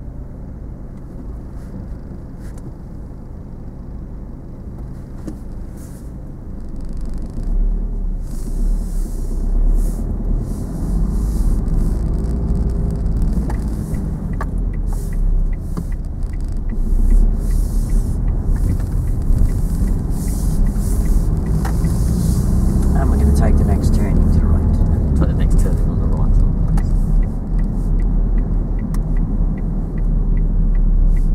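Car engine heard from inside the cabin. It idles with a steady low hum while the car is stopped, then about seven seconds in it pulls away: the engine note rises and falls as it accelerates through the gears, over a low road rumble.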